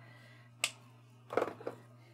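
Small plastic clicks from a shimmer brush pen's cap being worked: one sharp click about half a second in, then a quick double click near a second and a half, over a faint steady hum.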